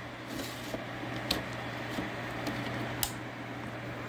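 Steady whir and hum of rack server and disk shelf fans, with two light clicks of a hard-drive caddy being slid into a drive bay and latched, about a second in and about three seconds in.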